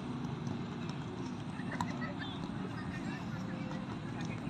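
Open-air training ground with distant voices over a steady low rumble, and a few sharp taps of footballs being kicked by players dribbling. The loudest tap comes a little under two seconds in.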